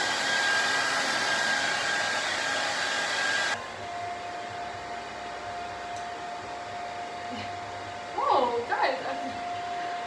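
Handheld hair dryer blowing hair. About three and a half seconds in it drops to a quieter, lower-pitched whine, and it keeps running at that setting. Near the end a brief voice-like sound rises over it.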